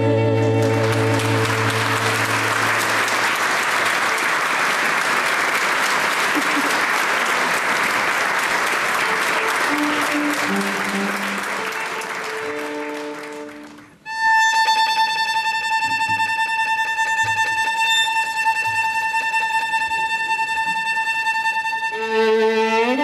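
A concert audience applauding as the singer's and string ensemble's final chord dies away, the applause fading out about thirteen seconds in. After a moment's silence a single high note is held steadily.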